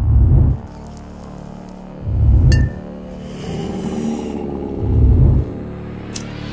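Instrumental intro of a hip-hop beat: three deep bass hits, each about half a second long, spaced two to three seconds apart over a sustained backing, with a single sharp click in between.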